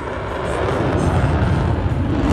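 F-16 fighter jet flying past, the noise of its single jet engine growing steadily louder.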